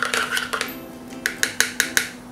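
Metal spoon stirring in a small silicone cup of fragrance oil and color stabilizer, with light clinks and then a quick run of about five sharp clicks near the end.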